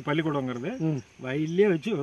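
A man's voice speaking in Tamil, explaining in steady conversational speech.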